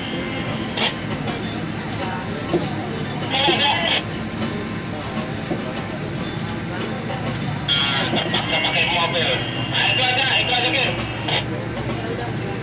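Airport apron bus engine and road noise running steadily, heard from inside the cabin. Indistinct voices rise over it at about three to four seconds in, and again from about eight to eleven seconds.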